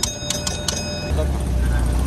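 A small bell struck about four times in quick succession, each strike ringing with high clear tones. Then, about a second in, a camper van's engine rumbles low and steady.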